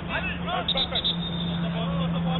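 Indistinct shouts and calls from footballers on the pitch, heard at a distance, over a steady low hum, with a few faint clicks about two-thirds of a second in.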